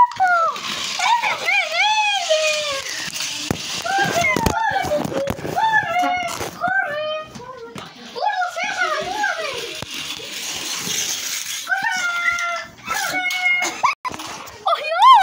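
Children's high-pitched wordless voices, with squeals and play-acting sounds. A few sharp knocks of handling come in the middle.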